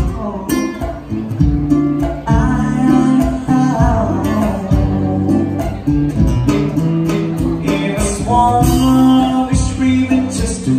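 Live acoustic guitar accompanying a male and a female singer performing a slow duet.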